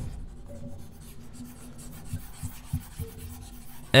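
Stylus scrubbing across a drawing-tablet surface in short, irregular strokes while on-screen handwriting is erased, with a faint steady hum underneath.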